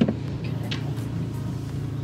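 Steady low hum of a car engine idling, heard from inside the cabin, with a brief faint rustle of clothing.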